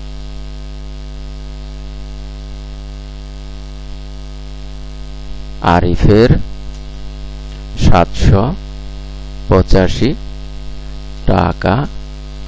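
Steady electrical mains hum throughout. From about halfway through, a voice speaks a few short phrases over it.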